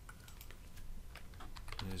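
Faint, scattered clicks of a computer keyboard and mouse, with a man's voice starting near the end.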